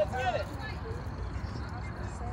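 Voices calling out across an outdoor ball field: one raised voice at the very start, then fainter scattered voices over a steady low background rumble.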